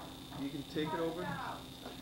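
Brief indistinct speech about a second in, over a steady high-pitched whine that runs throughout.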